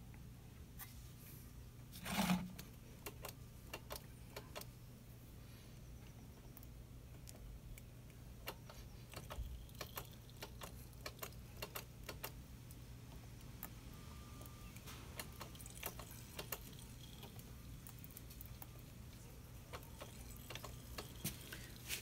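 Faint, scattered small clicks and ticks of hand work with a box wrench on a motorcycle's rear brake bleeder screw and bleed tube, with one louder short knock about two seconds in.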